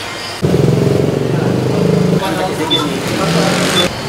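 A motorcycle engine running close by, with a person's voice over it; the sound starts suddenly about half a second in and cuts off just before the end.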